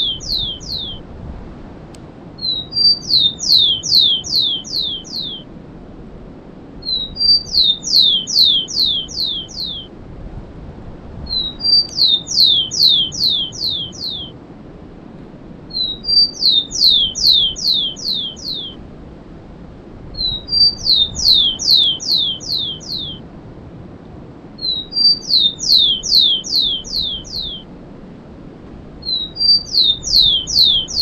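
Rufous-collared sparrow (tico-tico) singing the 'cemitério' song type, repeated about every four and a half seconds. Each song is one or two short high introductory notes followed by a quick series of about six falling slurred whistles.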